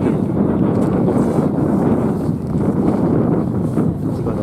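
Wind buffeting the camera microphone: a loud, uneven rush that fills the low end.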